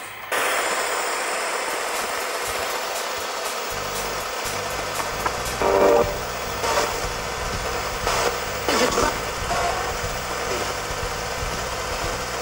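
Steady white-noise static hiss of the kind given by TV sets tuned to static. A low rumbling hum joins beneath it about four seconds in, and a few short bursts of sound break through it around the middle.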